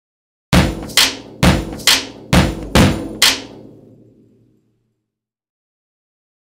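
Intro music sting of seven heavy percussive hits, about two a second, each with a ringing tail, the last one dying away.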